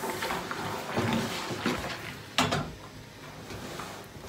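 A steam iron is pushed and slid over a camouflage uniform shirt on an ironing board, rustling the fabric. About two and a half seconds in, the iron is set down with a single sharp clunk, followed by quieter handling of the shirt.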